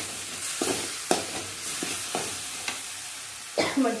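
A steel spoon stirring and scraping tomato-onion masala in a metal kadai, with a scrape against the pan about every half second over the steady sizzle of the frying masala.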